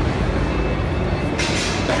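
Steady, fairly loud background noise of a busy exhibition hall, mostly low rumble, with a brief hiss near the end.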